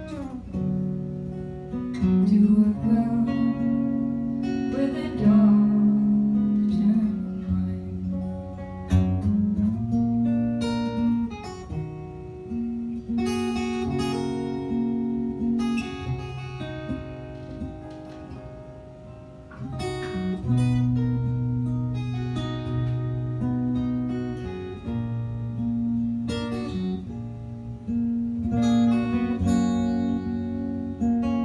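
Acoustic guitar playing an instrumental break, a picked melody over bass notes, dropping softer for a moment a little past halfway.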